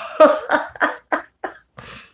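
A woman laughing: a run of short breathy bursts, about three a second, dying away.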